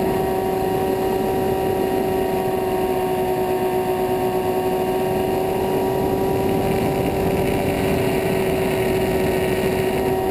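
Twin electric motors and propellers of a Skywalker FPV plane in flight, picked up by its onboard camera: a steady whine holding one pitch, over a constant rushing noise.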